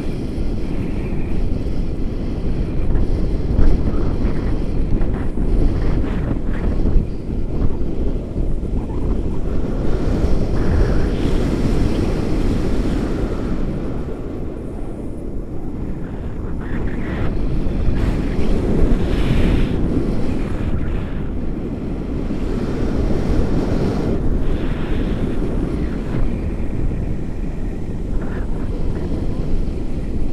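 Airflow of a paraglider in flight buffeting an action camera's microphone: a loud, low rumble of rushing wind that eases slightly for a few seconds midway, then swells again.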